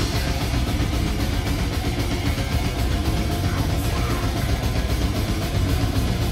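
Thrash metal band playing live: distorted electric guitar, bass and drums in a dense, continuous wall of sound.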